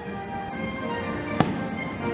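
A single firework shell bursting with a sharp bang about one and a half seconds in, over music with sustained notes.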